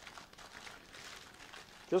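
Faint rustling of parchment paper as it is rolled up around a log of soft compound butter.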